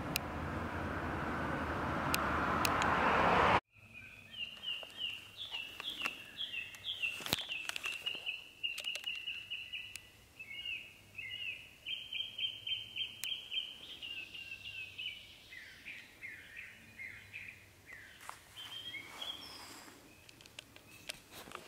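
A rushing noise swells for the first few seconds and cuts off suddenly. A songbird then sings a long, unbroken run of quick, repeated high notes in varied phrases until near the end.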